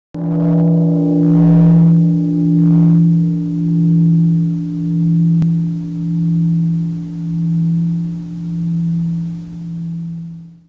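A deep Buddhist temple bell struck once, its low hum ringing on with a slow, even throb about once a second as it slowly fades.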